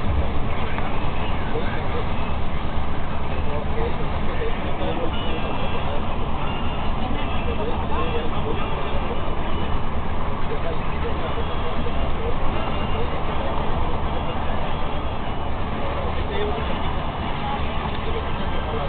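Steady engine and road noise heard from inside a vehicle travelling at highway speed, with indistinct voices in the background.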